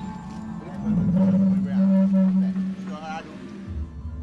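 A deep, drawn-out roar presented as the creature's cry. It swells about a second in, holds steady for nearly two seconds, and is followed by a shorter, higher wavering call near the end, over background music.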